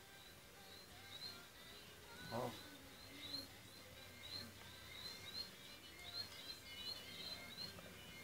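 Faint, quick high chirps repeated many times in irregular bunches, like small birds calling.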